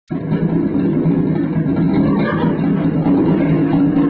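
Experimental noise music: a loud, dense, steady drone, mostly low in pitch, cutting in abruptly at the start.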